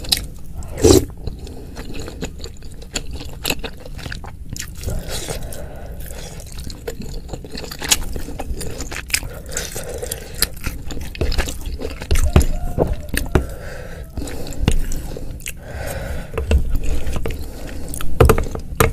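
Close-miked chewing and biting of chewy tapioca meatballs (bakso aci) in spicy broth, with wet squishy mouth sounds and many small crackles. A wooden spoon scrapes and knocks against the bowl now and then.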